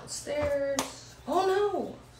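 A woman's voice making two wordless sung notes close to the microphone: a short held note, then one that rises and falls. A single sharp tap comes between them, a little under a second in.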